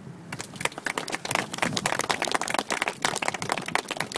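Audience applauding: dense, irregular clapping that starts a fraction of a second in.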